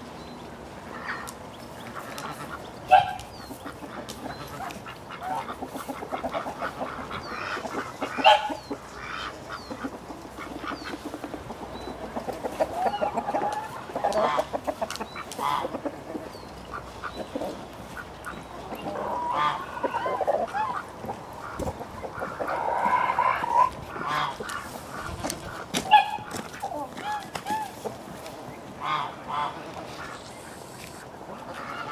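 Domestic poultry calling on and off in short, irregular calls, loudest at about 3, 8 and 26 seconds in.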